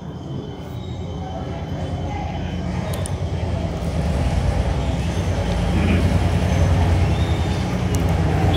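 Low engine rumble of a passing motor vehicle, growing steadily louder.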